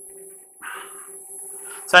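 A quiet pause with a faint steady hum underneath and a brief soft rustle a little over half a second in.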